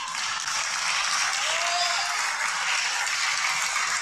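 Applause from a roomful of legislators: dense, steady clapping from many hands, with a faint brief voice heard through it about a second and a half in.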